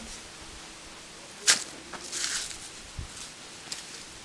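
Handling noise from a ceramic curling wand as it is taken out of the wig's hair: a sharp knock about a second and a half in, a short rustling hiss, then a soft thump.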